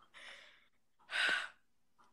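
A person sighing: two breathy puffs of air, a soft one at the start and a louder one about a second in.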